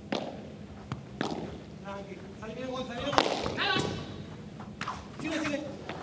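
A padel ball being struck back and forth during a rally. Several sharp knocks come at irregular intervals, clustered near the start and again about three seconds in, with faint voices between them.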